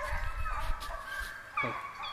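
Deer hounds baying faintly while running a deer, several long drawn-out notes overlapping at different pitches.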